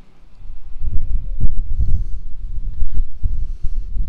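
Footsteps on stone paving, with a loud, uneven low rumble on the phone's microphone that starts about half a second in.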